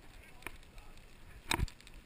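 Mountain bike rolling over a rough dirt road, heard from the handlebars, with a steady low rumble of tyres and a short cluster of loud knocks and jolts about one and a half seconds in as the bike hits a bump.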